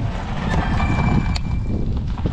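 Wind rumbling on the microphone, with two sharp clicks as the battery pack is seated on the electric stair-climbing dolly, the second about a second and a half in. A thin, steady high tone sounds for about a second in the middle.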